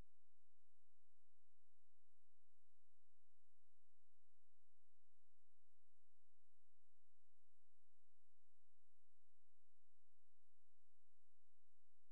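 Faint, steady electronic hum made of a few thin, constant tones, with nothing else happening.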